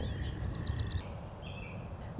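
A small bird singing a quick series of about six high, repeated notes in the first second, then one fainter short note, over low outdoor background noise.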